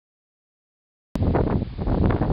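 Dead silence for about the first second, then wind buffeting the microphone cuts in suddenly and loudly, a heavy low rumble.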